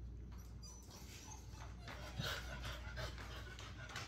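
Beagle panting softly, with a short whine about two seconds in, over a steady low hum.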